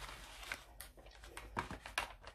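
Faint handling noise: a few light clicks and soft rustles as small toiletry items and a fabric pouch are moved about on a tabletop.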